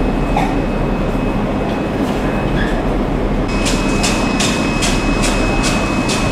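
Steady rumbling noise of live seafood tanks, with their pumps and aeration running and water bubbling. A faint steady high tone joins about halfway through, and a quick run of sharp ticks and light splashes follows while prawns are handled in a net over the tank.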